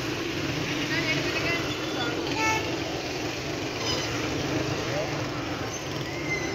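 Busy street traffic: motorcycles and auto-rickshaws running past close by, with a steady mix of engine and road noise and scattered voices. A brief horn beep sounds about two and a half seconds in.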